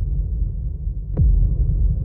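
Edited-in sound effect: a deep, throbbing low rumble with a single falling whoosh-into-boom about a second in.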